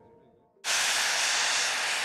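High-pressure steam venting from a geothermal wellhead: a loud, steady hiss that cuts in suddenly about half a second in, after near silence.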